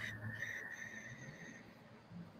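Faint slow inhale with a thin, steady whistling tone, fading away near the end: air drawn in during a guided belly-breathing exercise.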